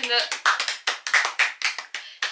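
Two people clapping their hands, quick and steady at about six claps a second.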